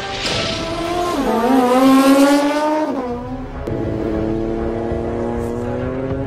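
A high-revving racing engine accelerating hard, its pitch climbing, dropping at upshifts about one and three seconds in, then climbing again more slowly.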